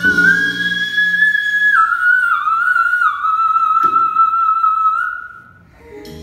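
A woman's voice singing very high, whistle-like held notes that step down in pitch over backing music. The music drops away after about a second and a half, and the notes stop about five seconds in.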